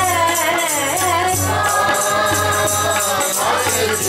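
Sikh kirtan: a woman singing a devotional hymn with the congregation singing along, over tabla and a fast, steady jingling beat.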